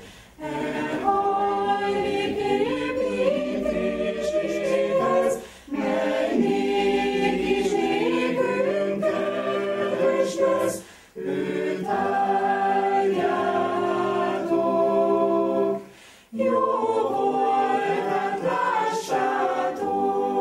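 A choir singing unaccompanied, in phrases of about five seconds with brief pauses between them.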